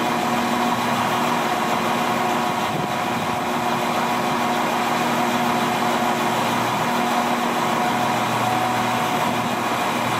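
Diesel engines of an Irish Rail 22000-class InterCity Railcar idling, a steady hum with several held tones, over the even hiss of heavy rain.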